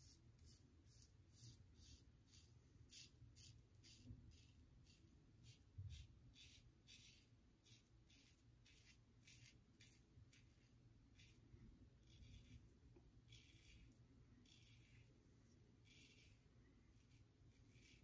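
Faint, scratchy short strokes of a Gillette Tech safety razor with a Kai blade cutting stubble through lather on the first pass. The strokes come about two or three a second at first, then slower and more spaced out in the second half.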